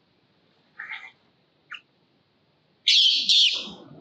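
Infant long-tailed macaque giving two faint short squeaks, then two loud shrill screams close together near the end, trailing off into lower, rougher cries.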